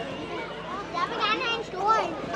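A group of young children's voices chattering and calling out together, with one high, wavering child's voice standing out a little over a second in.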